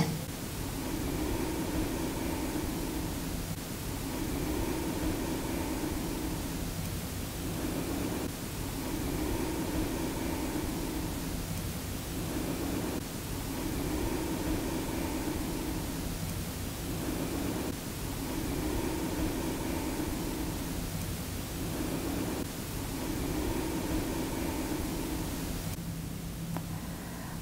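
A steady hiss, with a faint soft tone that swells and fades about every four to five seconds.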